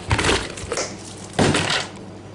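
Two loud, rough crunching scrapes about a second apart, from crushed ice packed around a pan of ice cream mixture being worked by hand.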